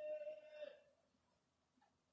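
Near silence, broken at the very start by one faint, short, steady pitched tone lasting under a second.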